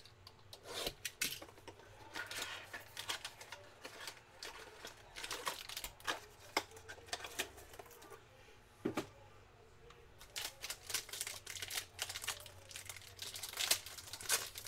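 Trading-card packaging being handled by hand: irregular clicks, rustling and crinkling of cards and foil wrappers, with a foil card pack being torn open near the end.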